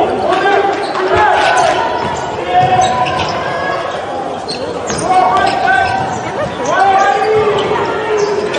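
Basketball being dribbled on a hardwood gym court during live play, mixed with short shouts and voices from players and the crowd.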